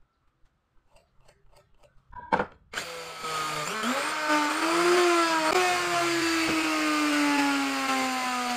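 A loud knock about two seconds in, then an electric wood router running and cutting along the edge of a wooden board, its motor pitch slowly sagging as it works.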